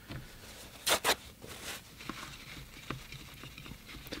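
A paper towel wiped over the mixing wells of a metal watercolour travel palette to clear away old paint: two short scratchy wipes about a second in, then fainter rubbing and small clicks.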